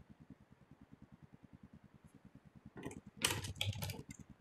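Typing on a computer keyboard: a quick run of keystrokes beginning just under three seconds in, after a near-silent start.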